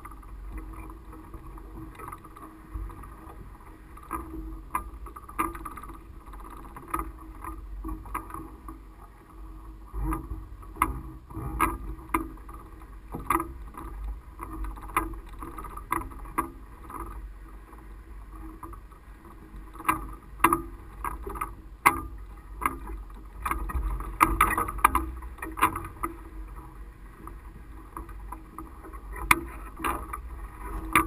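Low wind rumble on a mast-top camera, with scattered sharp clicks and knocks from the mast and camera mount, coming thickest about ten seconds in and again after twenty seconds.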